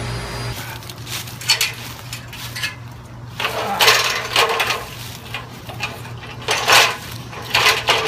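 Aluminium extension ladder clanking and rattling as it is handled and shifted, in several separate bursts.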